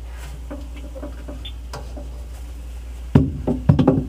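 Flat-blade screwdriver turning a refrigerator's defrost timer inside the control box, over a steady low hum: a few faint scrapes, then from about three seconds in a quick run of sharp clicks and knocks as the timer is advanced. Advancing the timer takes it out of the defrost setting, so the compressor and fan can start.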